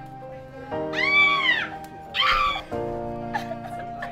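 Slow, sad background music with sustained notes, over two high, drawn-out wailing cries from a distressed woman, about a second and two seconds in.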